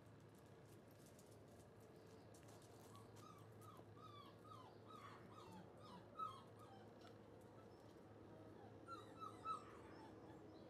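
German Shorthaired Pointer puppies, about five weeks old, whimpering faintly: a run of short, high, falling whines from about three seconds in, then three more close together near the end.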